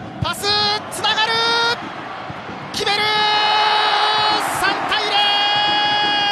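Drawn-out, high-pitched shouted calls from a man's voice, held steady for up to about a second and a half each, over stadium crowd noise as a football goal is scored.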